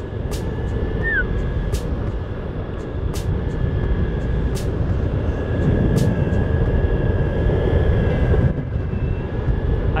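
Boosted Mini S electric skateboard riding at about 25 km/h: heavy wind rumble on the microphone over a steady high whine from the board's belt-drive motors. Sharp clicks come at a regular pace, about one every second and a half.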